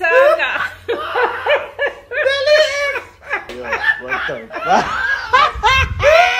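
Several people laughing heartily together in repeated bursts.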